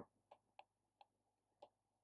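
Near silence with a few faint, short ticks about every third of a second: a pen stylus tapping on a writing tablet as words are written.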